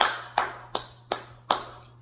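One person clapping his hands five times at an even pace, a little under three claps a second.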